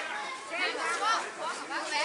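Indistinct chatter of people talking, several voices overlapping, no words clear.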